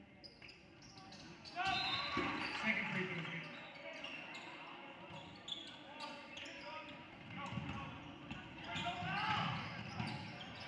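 Gymnasium basketball game sound: spectators' voices and cheering that swell about a second and a half in and again near the end, with a basketball bouncing on the hardwood court.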